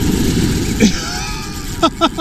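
Spinning reel's drag running out as a hooked pompano pulls line, over the steady rumble of surf and wind on the microphone. A man laughs near the end.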